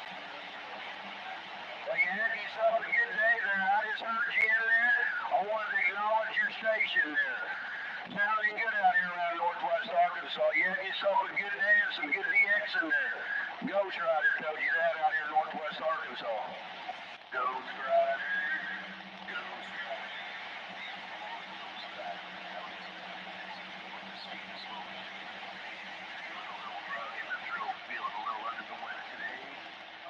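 AM CB radio traffic coming through a Ranger 2995DX base station's speaker: distorted, hard-to-make-out voices from distant stations fill the first half. About halfway through they give way to a steady hum with faint noise, and voices return briefly near the end.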